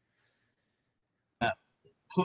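Near silence in a pause in conversation, then one brief voiced sound from a person about one and a half seconds in, a short vocal noise before speaking.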